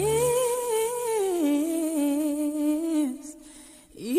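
Female pop singer's voice sliding up into a long held sung note and stepping down in pitch partway through, nearly unaccompanied, ending about three seconds in. A low sustained backing chord drops away just at the start.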